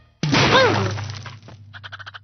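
Cartoon sound effect of a heap of pine cones crashing down: a sudden loud crash that dies away over about a second, followed near the end by a quick run of small clattering ticks.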